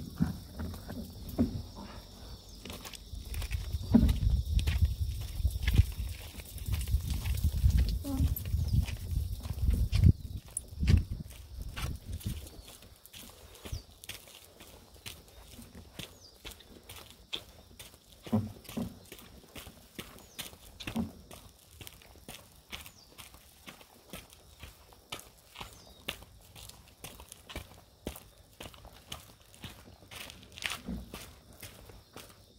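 Handling noise from a camera mounted on an inflatable stand-up paddleboard: a low rumble with thuds as the board is moved and picked up, then, from about halfway, a run of light irregular clicks and knocks from footsteps and the board being carried.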